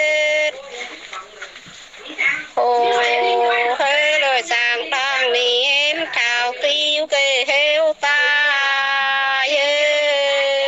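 A single voice singing a folk song without accompaniment, in long held notes with slides and wavering pitch, heard through a phone voice message. The singing breaks off briefly near the start and picks up again about two and a half seconds in.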